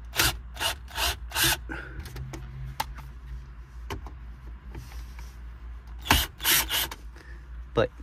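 Blue Ridge cordless drill-driver backing T20 Torx screws out of car dashboard trim, in short bursts: several about a second in and a couple more around six seconds in.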